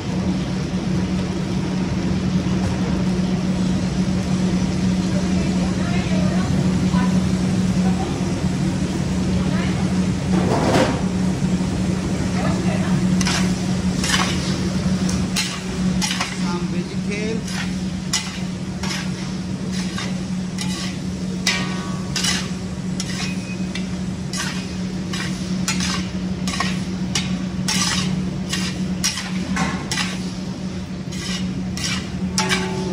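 Pasta and vegetables sizzling in a large wok while a long metal spatula stirs and tosses them. From about halfway on, the spatula scrapes and clacks against the pan in quick, irregular strikes. A steady low hum runs underneath.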